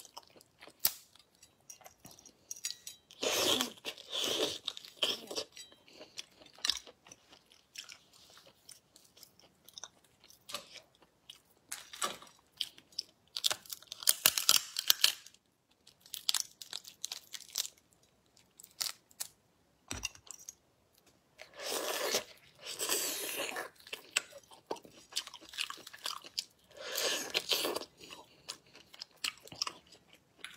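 Close-miked crunching and crackling of a langoustine's shell being cracked and peeled apart by hand, with chewing, coming in bursts several seconds apart between quieter stretches of small clicks.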